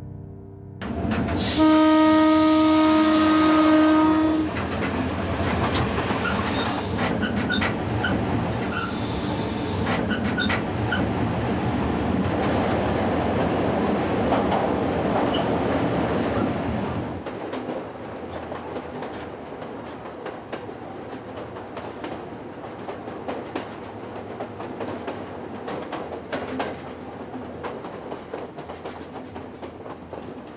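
Train horn sounding one steady blast of about three seconds, near the start, over the rumble and clatter of a moving train. The running noise drops to a quieter level about seventeen seconds in.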